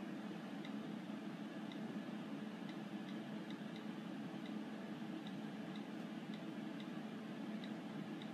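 iPhone on-screen keyboard click sounds as a password is typed: a dozen or so faint, short ticks, unevenly spaced at about one or two a second, over a steady low room hum.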